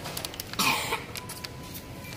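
A single short cough close to the microphone, about half a second in, over faint steady background noise.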